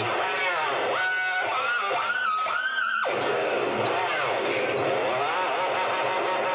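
Electric guitar with a Floyd Rose tremolo: the whammy bar bends notes up and down in swooping pitch glides, with held bent notes early on and then long dips down and back up.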